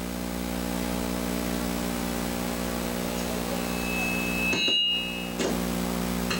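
A steady low hum made of several held tones, with brief higher tones and a short dip in level about four and a half seconds in.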